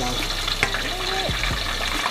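Pork deep frying in a pan of hot oil: a steady bubbling sizzle with a few sharp pops.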